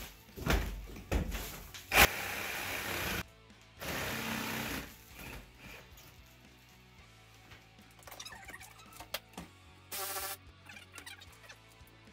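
Jigsaw cutting through a wall in short bursts, the longest about two and four seconds in, with a brief burst near the end. Background music runs underneath.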